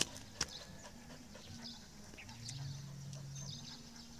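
Faint scattered taps and clicks of dogs' paws and footsteps on concrete, with one sharper click just under half a second in.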